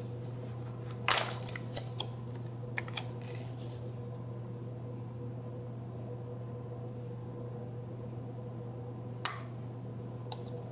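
Planner stickers handled and pressed onto a paper planner page: a cluster of short crinkles and taps about one to three seconds in, and another near the end, over a steady low hum.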